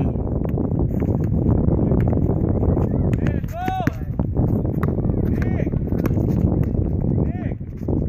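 Basketball bouncing on an asphalt court as it is dribbled, heard as irregular knocks over a steady wind rumble on the microphone, with a few short voice calls from players.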